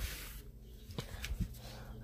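Quiet room tone with a low steady hum and a couple of faint knocks, about a second in and again a moment later, typical of a phone being handled while it is moved.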